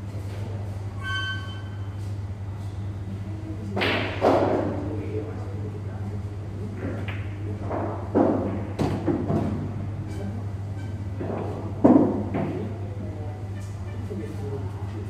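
Pool balls knocking as shots are played: loud knocks of cue and balls about four seconds in, again about eight seconds in, and loudest near the end, over a steady low hum.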